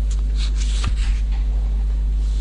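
Paper rustling and handling noise close to a microphone, with a sharp click about a second in, over a steady low hum.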